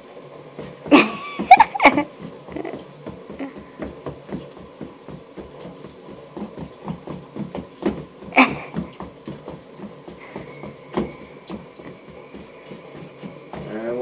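A toddler's sneakers pattering on a tile floor in quick small steps, about three a second, as she turns round and round. Short high-pitched squeals break in loudly about a second in and again near eight seconds.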